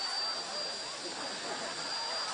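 Hand-held electric power tools, a drill among them, running flat out: a steady high motor whine over a dense noisy wash.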